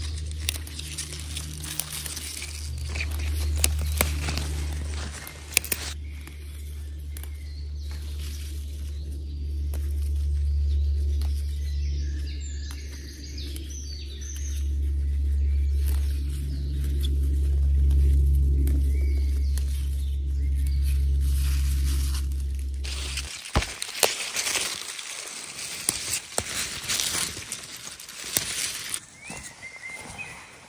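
Wild garlic stems snapping as they are picked by hand, a few sharp clicks over a steady low rumble that swells and fades. About three-quarters of the way in the rumble stops abruptly and gives way to footsteps and small twig cracks on the forest floor.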